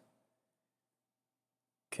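Near silence: a pause in the narration with only a very faint steady hum, broken by a man's voice saying "okay" at the very end.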